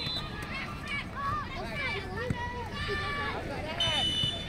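Voices shouting and calling out across an outdoor soccer pitch during play, with a short, high, steady whistle blast near the end.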